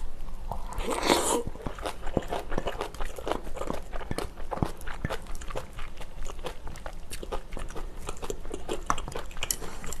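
Close-miked chewing of food: a louder crunchy bite about a second in, then steady chewing with many small wet mouth clicks.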